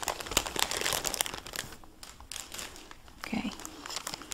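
Thin clear plastic packaging crinkling and rustling as hands pull it about. The crackle is busiest in the first second and a half, then quieter and sparser.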